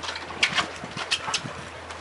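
Fishing boat's engine idling, a steady low hum, with a few short sharp ticks over it.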